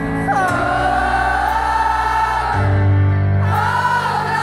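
Live band music recorded from the audience: long held sung notes over a sustained bass and keyboard. A sung note slides in about a third of a second in and is held for about two seconds, the bass drops to a lower note, and a new sung phrase begins near the end.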